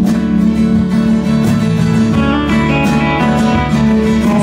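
A live rock band playing an instrumental passage of a ballad: a strummed acoustic guitar leads over electric guitar, bass and drums, with cymbal hits throughout.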